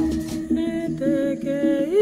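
Musical interlude: a wordless hummed melody of held notes, sliding up to a higher note near the end.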